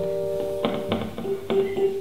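Electric guitar played through an amplifier between songs: a chord rings and fades, a few sharp muted-string clicks follow, then a single note is held.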